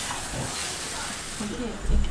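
Potato curry filling sizzling and hissing in a hot wok as it is stirred, kept moving so it does not burn. A low thump near the end.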